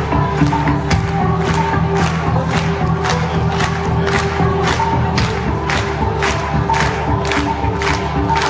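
Live band playing a song's instrumental intro: held chords and a bass line, with sharp hits on a steady beat about two to three times a second, and a concert crowd cheering over it.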